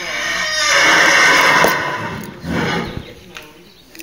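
A horse whinnying loudly: one long neigh that builds, is loudest between about one and two seconds in, then fades, followed by a shorter, quieter sound.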